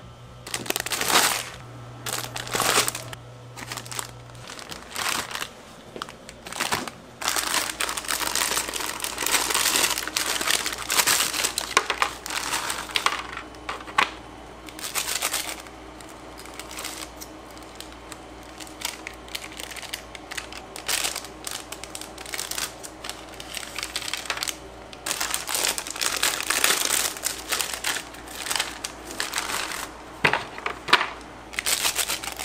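Packaging crinkling and rustling in irregular bursts as it is handled, over a steady low hum.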